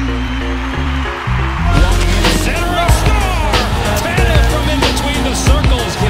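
Background music with a heavy bass line; a little under two seconds in, a fuller section starts, with sharp beat hits and a wavering vocal layer.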